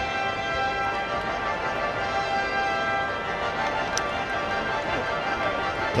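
A fanfare playing long held chords.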